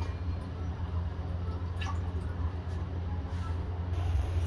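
Milk being poured into a small stainless steel saucepan, over a steady low hum.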